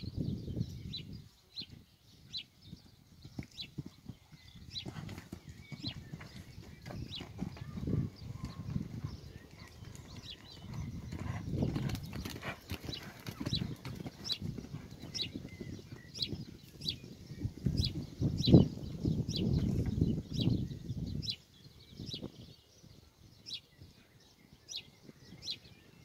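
Muffled hoofbeats of a pony cantering and jumping on a sand arena, coming and going as it moves nearer and farther, with one louder thud about two-thirds of the way through. A small bird chirps repeatedly in the background.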